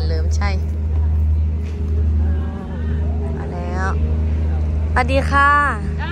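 A steady low engine-like hum that runs unchanged throughout, under a woman's voice saying hello near the end.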